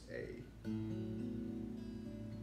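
Steel-string acoustic guitar fingerpicked: a B minor chord shape over an open A bass note (Bm/A), its notes picked one after another and left to ring.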